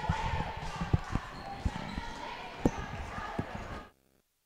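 Gymnasium crowd chatter with a basketball bouncing a few times at uneven intervals on the hardwood court. The sound cuts off suddenly just before the end.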